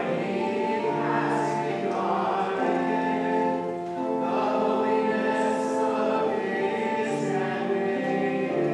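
Congregation singing a canticle with organ accompaniment: held organ chords change about once a second under the group voices.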